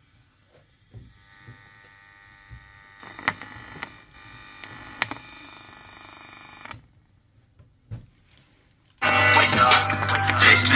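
Small clicks and knocks of an audio cable being handled and plugged in at a phone's jack, with faint music from a TDA2003 amplifier's loudspeaker between them. About nine seconds in, loud rap music suddenly starts playing through the amplifier and loudspeaker.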